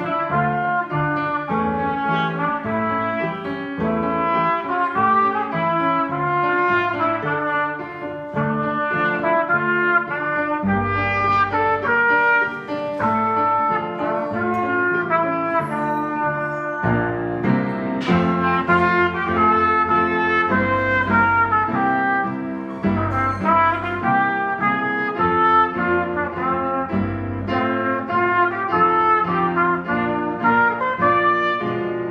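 Trumpet playing a lively march-style étude in clear, bright, separate notes, with piano accompaniment underneath.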